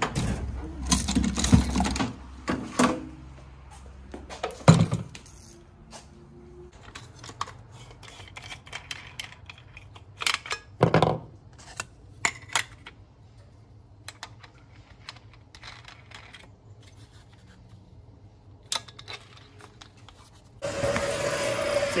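Metal tools being rummaged through and handled: scattered clinks, clatters and knocks of tools in a steel tool-chest drawer and of an angle grinder being handled. Near the end a steadier, louder noise with a hum comes in.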